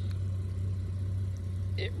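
A steady low hum of an idling engine, unchanging throughout.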